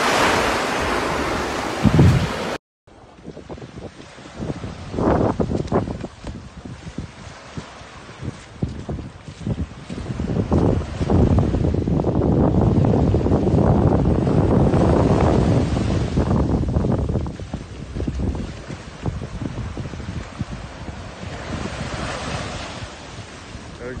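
Surf washing on a beach with wind buffeting the phone's microphone, a rough steady rush that swells loudest in the middle stretch. Near the start the sound cuts out for a moment.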